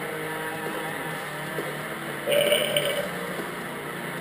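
Heavy metal music with guitar plays in the background, and a brief louder sound lasting about half a second comes in a little past two seconds.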